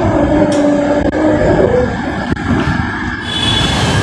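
Low, continuous rumble of wind and road noise on a camera microphone as an Ather 450 electric scooter rolls along slowly. A steady hum runs under it for the first second and a half, dipping slightly in pitch as it fades out.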